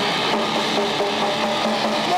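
A grindcore/thrash metal band playing live, led by heavily distorted electric guitar, loud and steady with no break, picked up by a camcorder microphone in the room.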